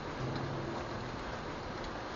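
Steady rain falling, an even hiss with a few faint drip ticks.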